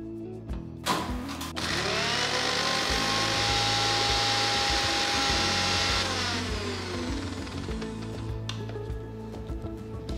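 Electric mixer grinder blending green chutney ingredients (mint, coriander, coconut, chilli). After a knock about a second in, the motor spins up with a rising whine, runs steadily for about four seconds, then winds down with falling pitch. Background music plays underneath.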